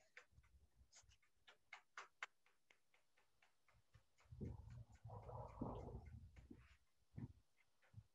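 Faint dry paintbrush strokes on canvas, short scratches about three a second. About halfway through they give way to a couple of seconds of low rumbling and rustling as the painter moves.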